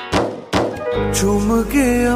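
Bollywood film song music: two deep drum hits, then a sustained bass note under a melodic line that glides and wavers between notes.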